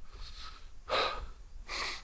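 A man's breaths during a pause in his talk: a short breath about a second in, then a sharper intake of breath near the end just before he speaks again.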